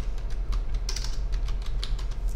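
Computer keyboard being typed on: a quick, fairly even run of key clicks, a few keystrokes a second, as a word is entered.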